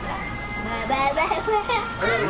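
Indistinct chatter of a child and adults, with music playing in the background.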